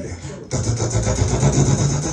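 A man's amplified voice making a wordless vocal sound-poetry noise: from about half a second in, a loud, sustained buzzing sound with a steady low drone, not spoken words.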